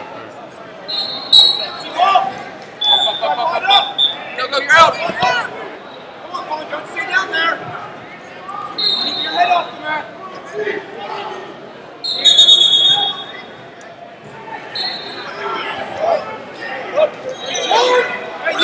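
Hubbub of voices and shouts of encouragement echoing in a large hall during a wrestling tournament, with short high-pitched whistle blasts several times, the longest about twelve seconds in, and a sharp knock about five seconds in.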